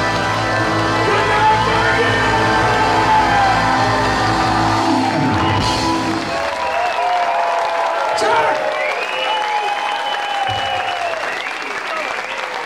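A live rock band holds its final chord, with electric guitar and bass ringing out, until it stops about five seconds in; a crowd then cheers and claps.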